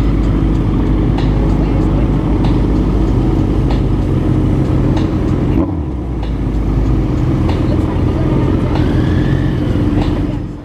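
Motorcycle engines running steadily at low road speed in slow town traffic, heard from a camera on one of the bikes, with a brief dip in engine sound a little before six seconds in.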